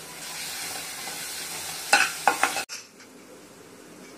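Onions, tomatoes and spices sizzling as they fry in an aluminium kadai, stirred with a perforated metal spoon that scrapes and clicks against the pan a few times. The sizzling cuts off abruptly about two-thirds of the way through, leaving quiet room sound.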